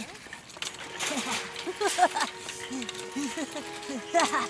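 A child's voice giggling and making short playful wordless sounds, over soft background music with held notes.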